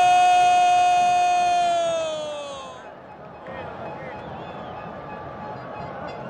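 Football commentator's long drawn-out shout of "gol", held on one steady high pitch and then sliding down and dying away about two and a half seconds in. After it comes a steady stadium crowd noise.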